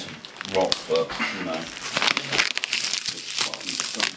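Plastic packing tape crinkling and crackling as it is cut with a utility knife and pulled off a bound person, in a dense run of small crackles that gets busier about halfway through.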